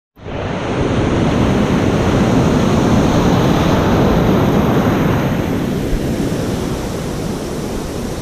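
Shallow beach surf breaking and washing close to the microphone: a loud steady rush of water that eases a little after about five seconds.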